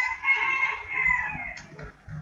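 A rooster crowing once: one long call of about a second and a half that trails off. A computer keyboard key clicks near the end.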